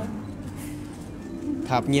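A short lull in a press interview: faint background murmur of people, with speech resuming near the end.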